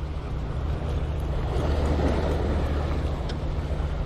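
Wind on the microphone and small waves washing against a rocky seawall: a steady low rumble under an even wash of noise.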